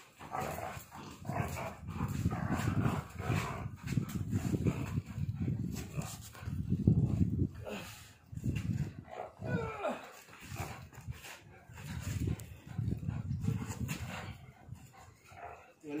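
Pitbull–bully mix dog growling in repeated bouts of a second or two while gripping and pulling a rope toy: play growling during tug of war.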